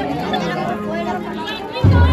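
Crowd chatter over a quiet stretch of a cornet-and-drum band's march. Near the end the band's drums and cornets come back in loudly.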